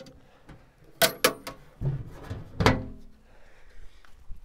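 Hinged metal switchboard enclosure lid being swung shut and latched: a few sharp knocks about a second in, a dull thud, then another sharp knock near three seconds.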